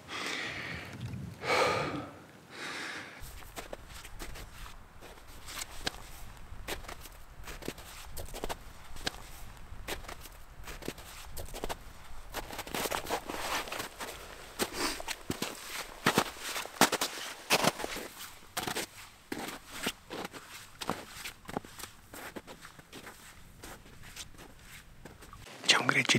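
Footsteps on snowy, grassy ground: an irregular run of steps while hiking uphill.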